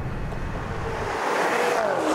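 Maserati Quattroporte V8 driving past on a wet road. Engine rumble in the first second gives way to a swell of tyre hiss on the wet tarmac, loudest about one and a half seconds in.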